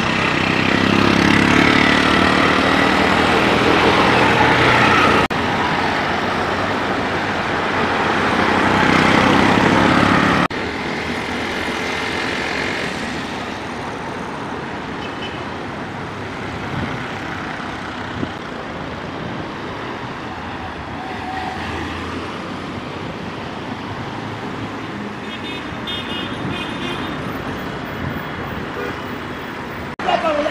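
Motor vehicle and road traffic noise, loud for the first ten seconds with two sudden breaks, then steadier and somewhat quieter.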